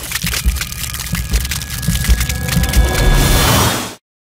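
Crackling, splintering sound effect made of many small rapid cracks over a low rumble, growing louder and then cutting off abruptly near the end.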